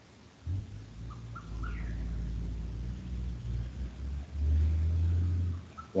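A low rumble that comes up about half a second in and grows loudest near the end before dropping away, with a few faint short high chirps about a second in.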